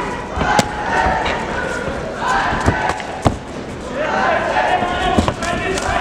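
Sharp smacks of gloved punches and kicks landing in a K-1 kickboxing bout, a handful of separate hits, the clearest a little after the start and about three seconds in. Voices shout throughout from ringside.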